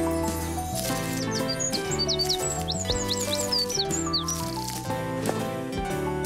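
Background music with a small bird chirping over it: a run of quick, high chirps from about a second in until past four seconds.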